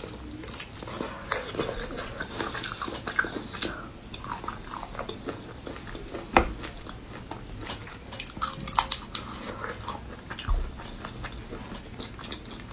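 Close-miked chewing and biting of raw marinated shrimp, with wet mouth clicks and small crunches of shell scattered throughout. One sharp click about six seconds in is the loudest sound, and a quick run of clicks follows near nine seconds.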